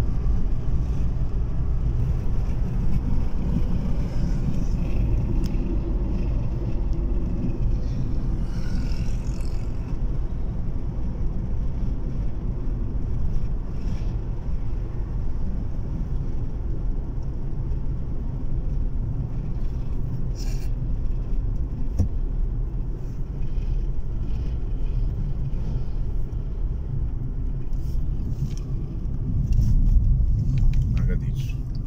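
Steady low rumble of a car driving, heard from inside its cabin.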